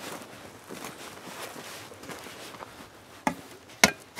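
Two sharp metal knocks about half a second apart near the end, as a steel shovel blade is set down on a rusty steel burn barrel. The second knock is the louder.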